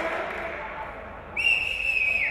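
A sudden shrill whistle about one and a half seconds in, held on one steady pitch, over a murmur of voices.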